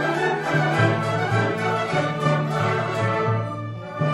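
Baroque orchestral music: bowed strings playing over a bass line that steps to a new note about every half second, softening briefly near the end.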